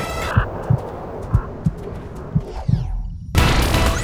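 Soundtrack sound design: the dramatic score drops out and deep, throbbing thuds like a heartbeat pulse for a few seconds. A swooshing sweep follows, then a brief silence, and the driving music slams back in about three seconds in.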